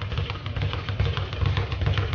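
A speed bag being punched, rattling rapidly against its round wooden rebound platform in a fast, even drumming rhythm of thumps and slaps.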